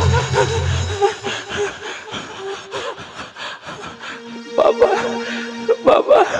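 Electronic keyboard accompaniment: a bass-heavy passage under a voice stops about a second in, and a steady held two-note chord starts about four seconds in. Short vocal cries sound over the chord near the end.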